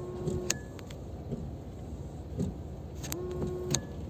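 Car cabin noise while driving, with the windscreen washer pump whining briefly twice, near the start and again about three seconds in, each ending with a click, as washer fluid is sprayed onto the rear window.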